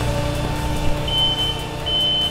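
The engine of a trash-compacting machine with a spiked drum on a boom runs steadily, and its backup alarm beeps twice, the first about a second in and the second near the end.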